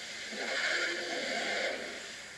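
Anime energy-blast sound effect: a rushing whoosh that swells about half a second in, holds, and fades near the end.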